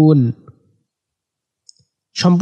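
A man's held recitation of the word 'kafirun' ends in the first third of a second, followed by near silence with one faint short click near the end.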